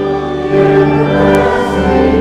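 Congregation singing a hymn with pipe-organ-style accompaniment; held organ chords carry on under the voices.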